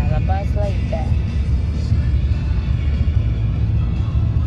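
Steady low rumble of road and engine noise inside a moving car's cabin, with a short stretch of voice in about the first second.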